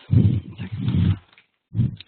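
A person clearing their throat: a rough, low rasping sound lasting about a second, then a shorter one near the end.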